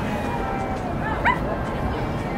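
Steady outdoor background noise, with a short, high yelp rising in pitch a little past a second in.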